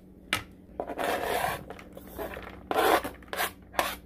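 Kitchen knife scraping across a plastic cutting board as chopped green onions are swept off it into a bowl: a sharp tap near the start, then a series of scrapes of varying length, the loudest about three seconds in.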